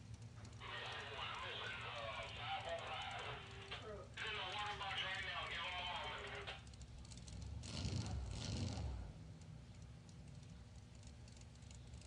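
Faint, muffled talking for the first half or so, over a low steady rumble. About eight seconds in, a brief swell of noise rises and falls away.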